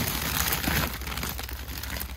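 Plastic frozen-food packaging rustling and crinkling as bags and boxes are shuffled about by hand in a chest freezer, ending with a plastic bag of frozen hash browns being grabbed.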